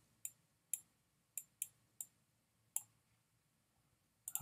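Six faint, sharp clicks at uneven intervals, made by a stylus tapping down on a pen tablet as numbers are handwritten.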